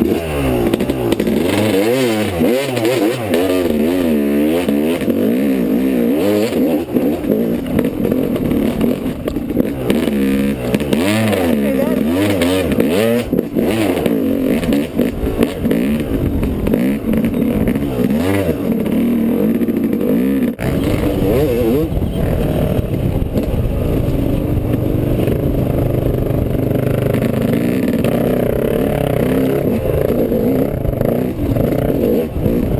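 Yamaha YZ250 two-stroke dirt bike engine, heard from the bike itself. Its revs rise and fall again and again under on-off throttle for about the first twenty seconds, then settle into a steadier run.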